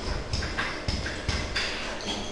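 Pen tapping and scraping on an interactive whiteboard while writing, a handful of short irregular knocks.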